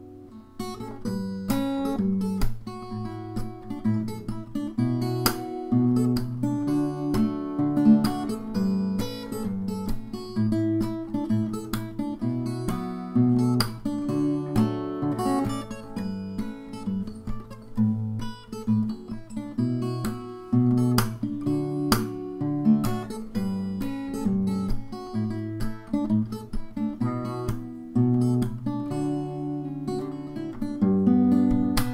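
Fingerstyle playing on a Yamaha cutaway steel-string acoustic guitar, with a melody and bass line picked together and sharp percussive hits now and then. Playing comes back in about half a second in, after a pause.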